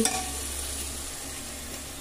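Onion-and-spice masala sizzling steadily as it fries in an open pressure cooker, with a spoon stirring through it.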